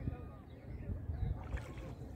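A shikara's paddle stroking through calm lake water, with irregular low swishes and knocks of water against the wooden boat.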